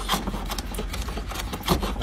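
Hand plane shaving wood in quick repeated push strokes, the blade cutting against the grain: the sign of a sharp plane iron.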